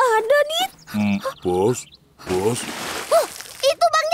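Cartoon characters' voices: short wordless exclamations, then a lower male voice, with a stretch of noisy rush about two seconds in.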